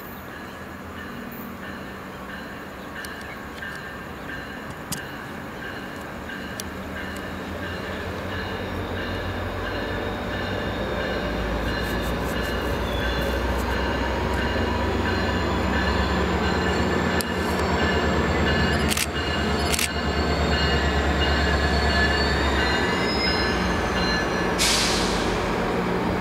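A diesel-hauled commuter train with bi-level coaches approaches and grows steadily louder. A low locomotive engine drone builds from about halfway in, over thin high wheel squeal from the rails, with two sharp clicks near the end.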